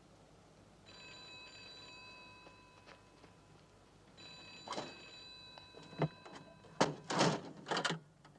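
Telephone ringing in a red public telephone kiosk: two rings of about a second and a half each, then it stops as the call is answered. A run of sharp knocks and clunks follows near the end, the loudest sounds here.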